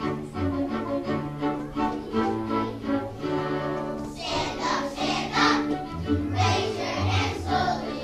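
A children's choir performs with its accompaniment, starting suddenly. The first half is held, sustained notes; about four seconds in the music grows fuller and brighter, with a strong rhythmic pulse.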